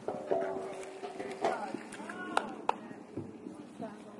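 Hoofbeats of a horse cantering on a sand arena, with people's voices in the background and two sharp knocks about two and a half seconds in.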